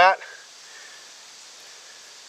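The tail of a spoken word, then a steady, faint outdoor background hiss with no distinct event in it.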